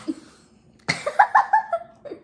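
A girl coughing and spluttering, with a louder sudden outburst about a second in that breaks into pulsing, laugh-like vocal sounds.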